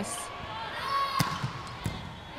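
A volleyball being hit during a rally: a sharp slap of hand on ball a little past halfway, then a second, lighter hit near the end.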